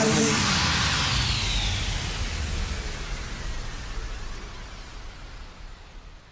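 The end of a dance-pop track: the beat stops and a hiss-like wash of noise fades out slowly over several seconds.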